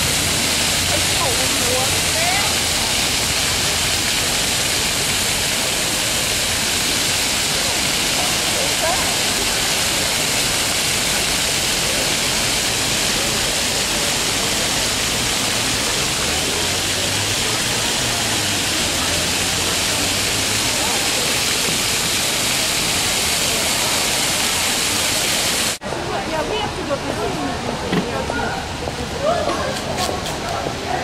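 Dozens of ground-level fountain jets splashing onto stone paving: a steady hiss of falling water. It cuts off abruptly near the end, giving way to quieter street sound and faint voices.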